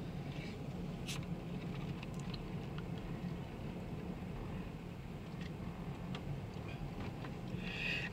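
Low, steady hum of a vehicle rolling slowly, heard from inside the cabin, with a few faint clicks.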